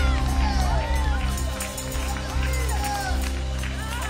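Live gospel praise music: heavy sustained bass and keyboard chords with a lead voice rising and falling over them, and the congregation clapping along with a tambourine.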